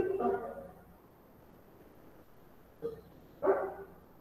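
A dog barking, with short barks at the start and again about three seconds in.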